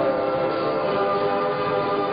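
Music: a steady held chord of several sustained notes.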